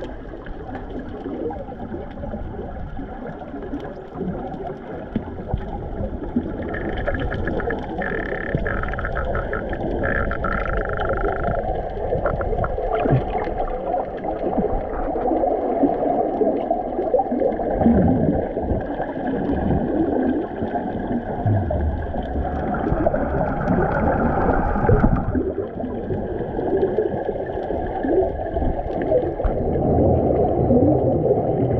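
Muffled underwater noise as picked up by a waterproof camera under the surface: a steady low rush of water with crackling and bubbling.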